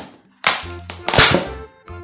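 Plastic ice cream tub lid being pried and pulled off: a sharp plastic crack about half a second in, then a louder crackling scrape about a second in.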